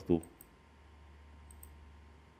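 A short spoken word at the start, then two faint, quick clicks about a second and a half in, typical of a computer mouse button being pressed while editing on screen.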